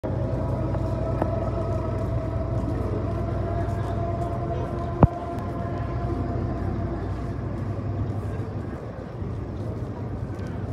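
Steady outdoor hum with faint held tones, broken by one sharp click about halfway through, after which the low hum drops away.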